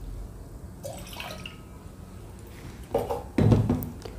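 Water dripping and splashing into a stainless steel pot, mostly faint, with a louder splash for about a second near the end.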